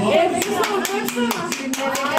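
Hand claps, several a second, starting about half a second in, with voices talking over them.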